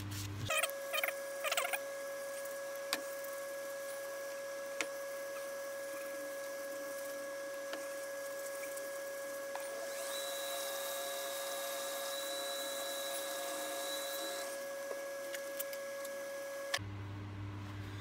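Wood lathe's motor running with a steady whine while the spinning bowl is rubbed with a cloth, with a few faint clicks. A thinner, higher whistle joins about ten seconds in and lasts about four seconds.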